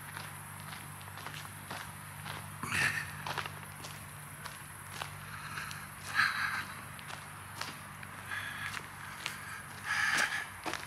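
Footsteps of a person walking at a steady pace, over a steady low hum.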